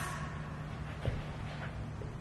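Low steady background hum with a single soft knock about a second in.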